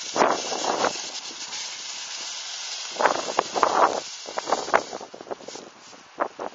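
Snow shovel scraping across a paved path and pushing snow, in one bout near the start and another about three seconds in, with a few shorter scrapes after.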